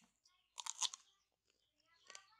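Crisp crunching of fruit: a quick run of sharp crackles lasting about half a second, a little before the middle.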